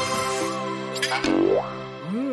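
Light cartoon background music with a comic sound effect: a sharp click a little past a second in, then a quick rising pitch glide like a cartoon 'boing'.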